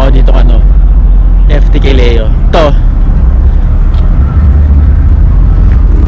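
Heavy low rumble on a handheld camera's microphone as it is carried along a city street with traffic, with short bits of a man's voice about half a second and about two seconds in.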